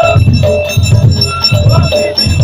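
Live ahwach music: a heavy, repeating drum rhythm under short lines of men's group chanting.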